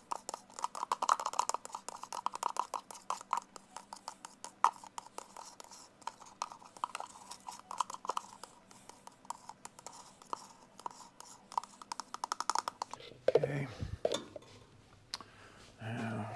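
Stir stick scraping the inside of a plastic paint-mixing cup in quick, irregular strokes, working the last of the paint out into a paper strainer. A few louder handling knocks come near the end.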